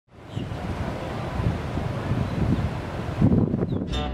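Outdoor wind buffeting the microphone: a steady noisy rush with irregular low gusty thumps. It fades in at the start and drops away just before the end.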